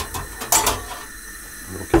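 Wire pot grate of a steel-cased camp stove being lifted out: a sharp click at the start, then a louder metallic clatter about half a second in.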